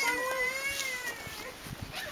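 A small child's voice in one long, drawn-out whine lasting about a second and a half.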